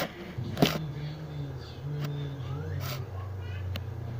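Handling noise on a tablet's microphone: a few knocks and clicks, the loudest just before three seconds in, over a steady low hum.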